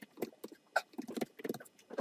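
Computer keyboard typing: a quick, uneven run of about a dozen key clicks as a word is typed out.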